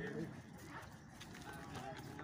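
A few hoof steps of a racehorse being led at a walk on turf, under faint background voices.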